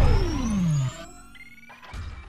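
Synthesized intro sound effect: a loud electronic tone sweeping steadily downward in pitch over about a second, with a faint high tone rising above it, then fading away.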